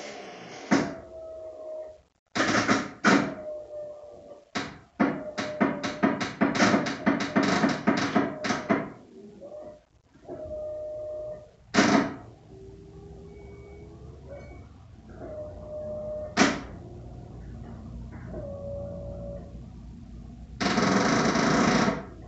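Starter solenoid of a 1994 Ford F-150's 302 V8 clicking rapidly again and again when the key is turned, then clicking singly twice, without cranking the engine: the battery is too flat after months in storage. Short whining tones sound between the clicks, and a loud rush of noise near the end.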